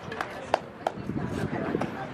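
Four sharp knocks, the loudest about half a second in, some with a brief ring, over faint outdoor voices.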